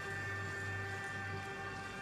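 Background score: a steady, sustained drone of several held tones, with no beat or melody.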